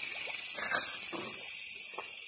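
Night insects, crickets among them, chirring in a steady, continuous high-pitched chorus.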